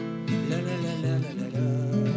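Two acoustic guitars playing a song's introduction together.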